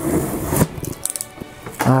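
Cardboard shipping box being cut and torn open with a box cutter: scraping and ripping cardboard with small knocks.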